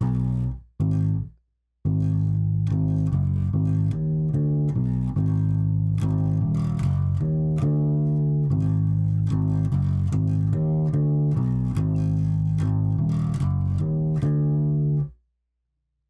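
A guitar played alone, picking out a riff note by note in A to work it out by ear: a few short notes, a pause, then steady playing that stops abruptly near the end.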